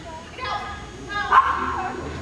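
An agility dog barking twice mid-run in high-pitched yips: a short one about half a second in, then a longer, louder one a second in that drops in pitch at the end.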